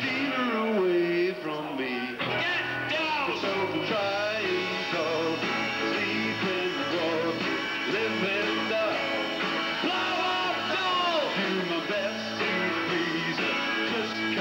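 Live rock and roll band playing: electric guitar and bass guitar, the lead line bending and gliding in pitch.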